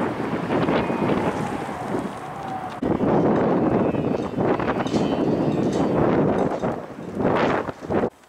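Strong wind buffeting the camera microphone, a dense steady rush that dips briefly and then jumps back up nearly three seconds in.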